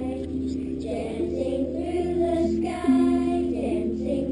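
A class of young children singing together in unison, a slow melody of long held notes that step from pitch to pitch.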